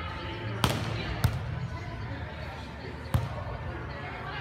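A volleyball being struck by players' hands during a rally: a sharp slap about half a second in, another half a second later, and a third near the end. Voices carry in the background of the hall.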